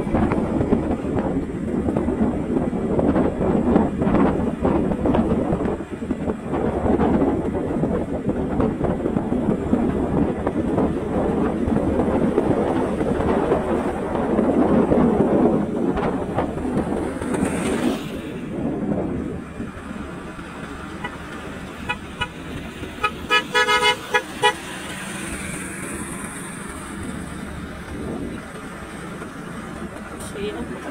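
Motorcycle riding along a road with wind rushing over the microphone and road noise, louder for the first half and quieter after. About three-quarters of the way through, a horn gives a quick run of short toots.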